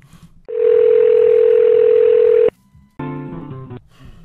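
Telephone ringback tone: one steady ring lasting about two seconds as an outgoing call rings. After a short pause comes a brief musical tone, just before the call is answered.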